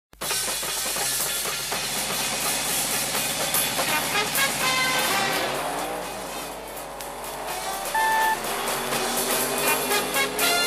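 Car engine sound effects over music, with a vehicle going past in the middle, its pitch rising and then falling. About eight seconds in there is a short, steady beep.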